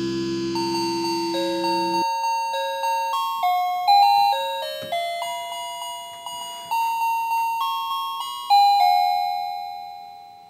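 A melody of chiming, bell-like struck notes, one at a time, each ringing and fading, with two louder notes about four seconds in and near the end. At the start the last distorted electric-guitar chord of a song rings out and stops about two seconds in.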